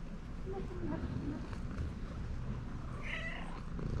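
Domestic cat purring while being stroked: a steady, rough low rumble. A short high meow about three seconds in.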